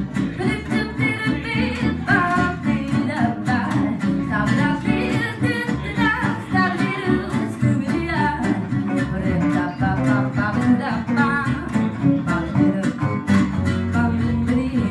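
A woman singing a jazz vocal line with a small jazz-manouche band: a double bass plucking the bass line and two guitars, one keeping a steady rhythmic beat and the other an archtop, all played live.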